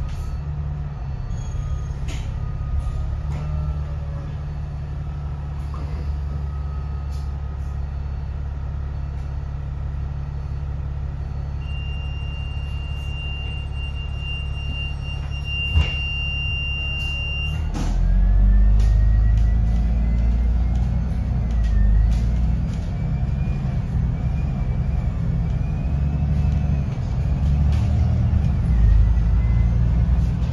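Alexander Dennis Enviro500 double-decker bus's diesel engine idling, heard from the upper deck, with a steady high tone for several seconds and a sharp click just before the bus moves off. About 18 seconds in the engine gets louder as the bus pulls away, a whine from the drivetrain rising in pitch as it gathers speed.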